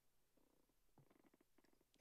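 Near silence: room tone, with faint low sounds from about half a second in.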